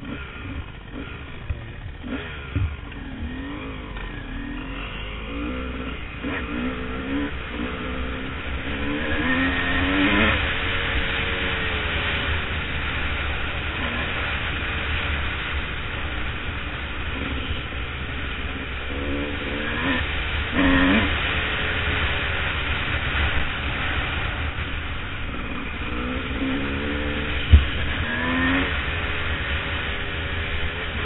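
Dirt bike engine pulling away and then revving up and down through the gears while riding a dirt trail, with steady wind noise on the microphone. A single sharp knock shortly before the end.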